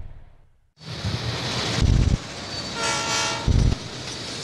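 TV-ident sound design. The previous bumper's sound fades out, and after a brief gap a noisy rumble starts. Two heavy low thuds come about a second and a half apart, with a short horn-like tone between them.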